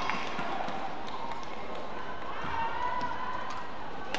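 Badminton rally: rackets striking the shuttlecock, a sharp hit at the start and lighter clicks later, with court shoes squeaking on the court mat as the players move.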